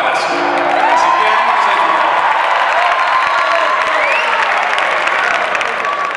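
Live audience applauding and cheering, with mariachi music under it and one voice holding a long call about a second in.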